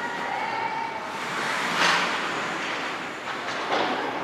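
Ice hockey game sounds in a rink: skates scraping the ice and sticks and puck clattering, with spectators' voices, and a loud burst of noise just before halfway through.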